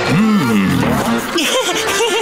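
A cartoon character's wordless vocal cries. One long call bends up and then down in pitch at the start, and shorter cries follow in the second half.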